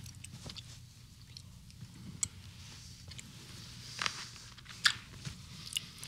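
Quiet room tone with small handling noises: a few faint, sharp clicks and a soft fabric rustle about four seconds in, as a throw pillow is taken onto a lap on a sofa.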